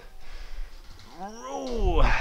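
A man's voiced exhale, an 'oh' that rises and falls in pitch over about a second in the second half, made under effort during an ab rollout on suspension straps. A breath is heard before it.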